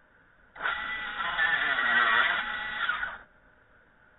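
Table saw blade cutting through a wooden board, a loud pitched whine that wavers as it cuts, lasting about two and a half seconds and starting and stopping abruptly.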